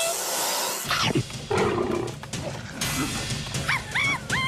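Cartoon rattlesnake sound effect: a sharp hiss lasting under a second, then a quick falling swoop, over background music.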